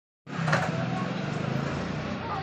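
Ashok Leyland Stallion army truck's diesel engine idling with a steady low hum, cutting in about a quarter second in.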